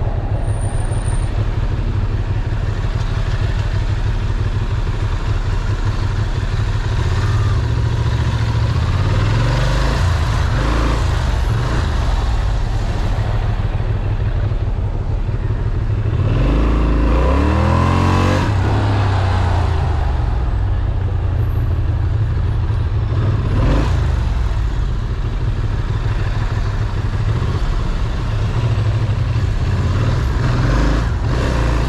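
Ducati Monster's V-twin engine running as the motorcycle rides at low speed through city traffic. About sixteen seconds in, the engine revs up in a rising sweep as the bike accelerates, then settles back to a steady run.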